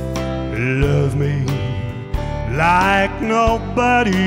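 Live country band playing a slow song: pedal steel guitar over bass and drums, the steel sliding up into higher held notes about halfway through.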